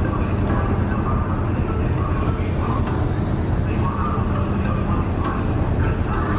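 Ro-pax ferry's diesel engines and funnel exhaust running with a steady low drone and hum, heard from the open deck as the ship manoeuvres to berth.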